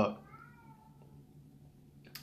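A cat gives one faint, short meow lasting under a second, just after a spoken word.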